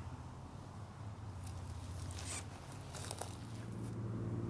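Soft rustling and handling noise: a few short scrapes between about a second and a half and three seconds in, over a low steady drone.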